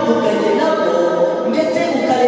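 Unaccompanied hymn singing, a man's voice into a microphone with other voices joining, in long held notes.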